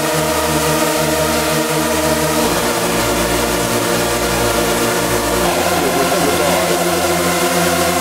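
Hardcore techno track in a section of held, distorted synth chords over a sustained bass, with no kick drum. The chord changes twice, about two and a half seconds in and again about five and a half seconds in.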